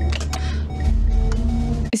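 Film soundtrack: music over a loud, deep, steady rumble that swells about halfway through, with a few sharp clicks, in a simulated spacecraft re-entry.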